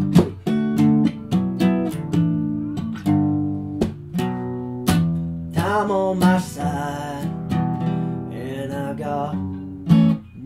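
Instrumental break in which an acoustic guitar strums chords in a steady rhythm. About halfway through, a melodic lead line with bending, sliding notes comes in over the strumming.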